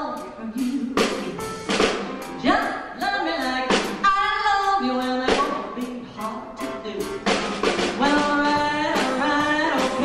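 Woman singing live into a handheld microphone, holding and bending long notes, backed by a band with a steady drum beat.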